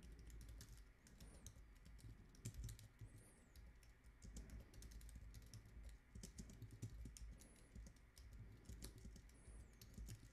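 Faint typing on a computer keyboard: a steady run of quick key clicks, several a second.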